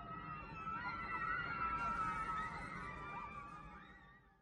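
Eerie ambient soundtrack: wavering, sliding high tones over a low rumble. It swells about a second in and fades out near the end.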